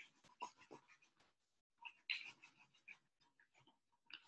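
Faint, short, scattered sounds of a small paint roller being rolled back and forth through wet acrylic paint on a stretched canvas.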